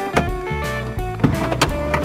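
Background music: a guitar tune with a steady beat and sharp drum hits.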